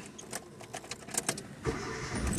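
A few faint clicks, then a car engine starting up near the end, settling into a low running rumble.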